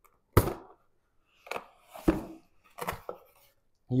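Cardboard box being opened by hand: a sharp knock about a third of a second in, then three shorter, softer cardboard scrapes and taps as the lid and flaps are lifted.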